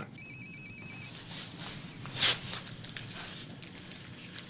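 Cell phone ringing with one electronic trilling ring about a second long, just after the start. About two seconds in comes a brief rustle.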